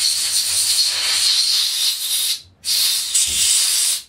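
Can of compressed air duster blowing through its straw nozzle into a flooded flashlight's charge port to spray the water out: a loud, steady hiss that breaks off briefly about two and a half seconds in, then a second blast.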